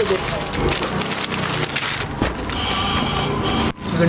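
Crinkling and rustling of plastic packaging as a plastic-wrapped ladies' suit is pulled from a stack and handled, a dense run of crackles that drops out briefly just before the end.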